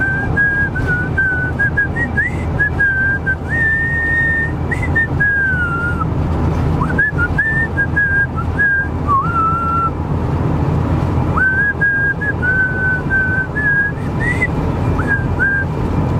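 A man whistling a tune in a melody of separate held notes, pausing briefly about ten seconds in. Under it runs the steady road and engine rumble of the moving vehicle he is driving.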